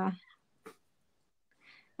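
Near silence in a pause of the talk, broken by one brief click about two-thirds of a second in.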